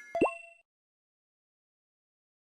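A short cartoon pop sound effect: two quick rising blips with a brief ringing tone, over within the first half-second.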